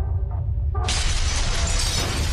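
Intro sound effect of a deep, steady rumble; a little under a second in, a loud crash of shattering debris breaks in and keeps going.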